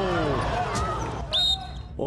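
Basketball play on a hardwood court: crowd noise with a sharp thud of the ball about three-quarters of a second in, then a brief high squeak about a second and a half in.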